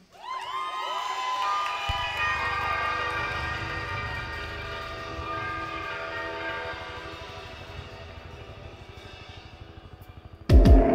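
Sustained, chord-like electronic intro to a live indie-pop song: held tones that bend upward as they come in, a low throbbing pulse joining about two seconds in, and the whole slowly fading away.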